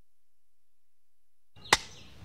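Dead silence in the soundtrack, then a single sharp click as faint background sound cuts back in near the end, typical of an edit splice in the film's sound.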